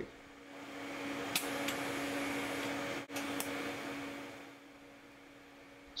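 Shop machinery running with a steady hum and hiss that swells in, holds, then fades away, with a few faint clicks.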